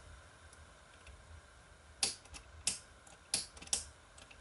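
A 1000-watt high-pressure sodium lamp on an undersized 70-watt ballast trying to strike an arc. Sharp, irregular clicks start about halfway through, over a faint low hum. The ballast is struggling to start the oversized bulb.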